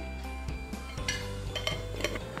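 A metal spoon clicking lightly against a ceramic bowl as sugar is tipped into flour, with a brief soft rustle of the sugar about a second in.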